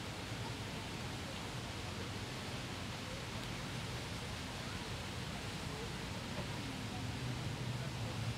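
Steady outdoor ambient noise: an even hiss over a low hum, with no distinct events.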